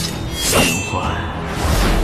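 A sword drawn with a sharp metallic clang and a ringing note about half a second in, then a swish near the end, over background music.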